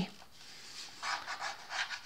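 A hand rubbing along the plastic shell of a DJI Phantom 3 Professional drone, a faint rubbing that starts about halfway through.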